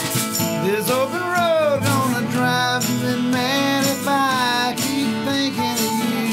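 Acoustic country music: a steel-string acoustic guitar strumming to a steady beat, while a dobro plays a slide melody whose notes glide up and down, about a second in and again about four seconds in.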